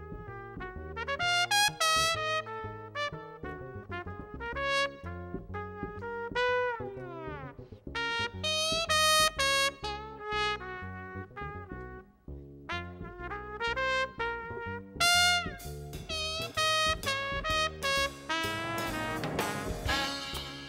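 Jazz trumpet solo in quick runs of notes, with a long falling smear about seven seconds in and short breaks between phrases, over an upright bass.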